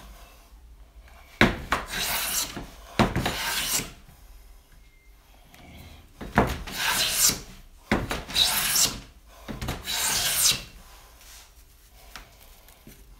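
Low-angle jack plane with a 38-degree bevel-up blade cutting along mahogany: five strokes about a second each, each a rasping hiss of the blade taking a thin shaving, with a click as the plane starts each stroke. The blade leaves super fine shavings on this tear-out-prone wood.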